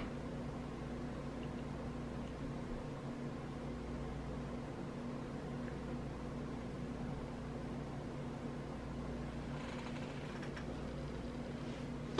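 Steady low room hum with a few faint held tones, unchanging throughout; the lipstick going on makes no distinct sound.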